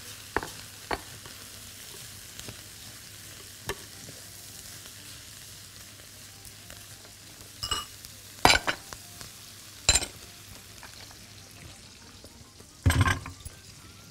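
Raw white rice being stirred with a wooden spoon through butter and herbs in a hot pot, frying with a faint steady sizzle and the rustle of grains. It is the rice toasting in the fat before the boiling water goes in. Scattered sharp knocks of the spoon against the pot come through, the loudest near the end.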